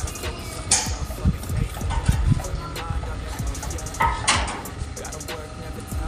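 Steel trowel scraping cement plaster across a hollow-block wall, in two brief strokes about a second in and about four seconds in, among low thumps and faint music.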